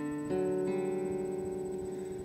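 Acoustic guitar chord struck, then strummed again about a third of a second in and left to ring. This is the chord change of the verse riff, with a finger moved to the fourth fret on the D string.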